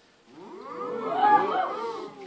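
Audience reacting with a chorus of 'ooh' calls from many voices at once, pitches sliding up and down, swelling about half a second in and fading near the end.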